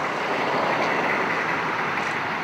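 Steady noise of road traffic passing on the street, with no distinct beats or tones.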